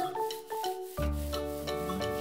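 Felt-tip marker rubbing in quick back-and-forth strokes across a small cylinder as it is coloured, over background music of sustained keyboard notes and bass that change about once a second.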